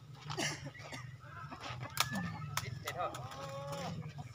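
A rooster crowing once near the end, a single arched call of about a second. A sharp knock comes about two seconds in.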